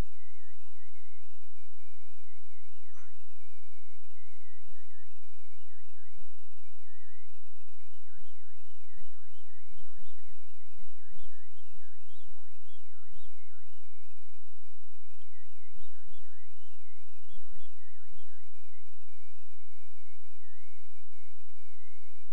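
A continuous high-pitched wavering tone. It holds a steady pitch at first, swoops up and down many times in the middle, then settles to a steady pitch again near the end.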